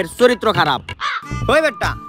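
A man's voice over background music, ending in two short arched cries in the second half.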